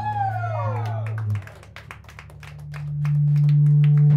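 Audience cheering right after a punk band's song ends: one falling whoop at the start, then scattered hand claps. Under it a steady low hum from the stage amplifiers swells up in the second half.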